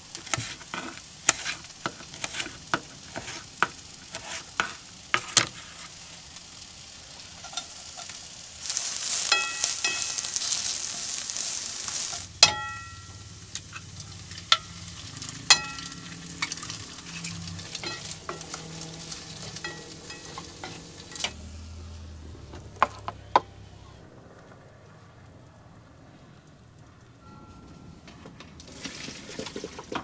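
A knife chopping on a plastic cutting board. Then, about nine seconds in, a burst of sizzling as food goes into hot oil in a frying pan, lasting a few seconds. After that a metal utensil clinks and rings against the pan while the food keeps frying quietly.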